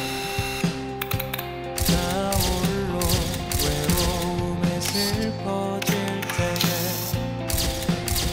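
Background music with camera shutter clicks over it, firing singly and in rapid bursts as a photographer shoots a posed group photo.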